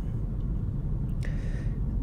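Steady low rumble of road and tyre noise inside the cabin of a Hyundai Kona Electric driving at road speed, with no engine sound.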